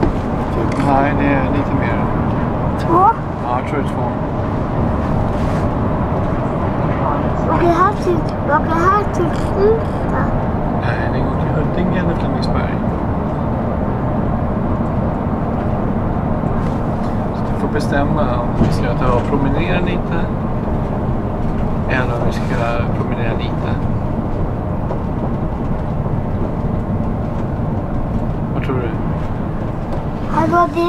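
Steady low drone of engine and tyre noise heard from inside a bus cabin while it drives at highway speed. Short snatches of voices come and go over it a few times.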